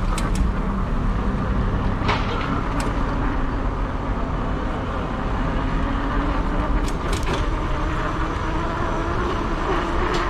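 Motorcycle engine running at low speed in city traffic, its pitch rising slowly through the middle as it pulls along, with a few short sharp clicks.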